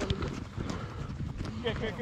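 Running footsteps thudding on a grass pitch over a low rumble, as players chase the ball; a voice calls out near the end.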